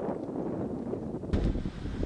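Wind buffeting an outdoor camera microphone, a rough steady noise with no voice in it. About a second and a half in it gives way to a louder, deeper rumble.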